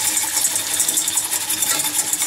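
Butter and sugar sizzling in a small stainless-steel saucepan as the sugar starts to caramelize, with a metal whisk clicking and scraping against the pan as it stirs.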